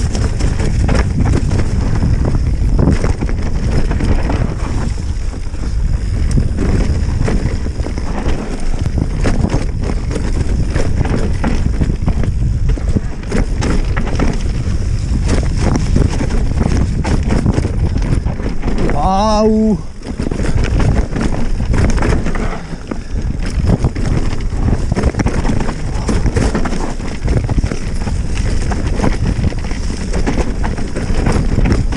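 Wind buffeting the microphone of a camera riding on a mountain bike, over the rumble and rattle of the bike descending a rough dirt trail. About two-thirds of the way through, one short pitched sound breaks in for under a second.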